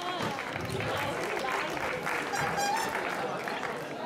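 Spectators applauding, many hand claps, with voices talking over it.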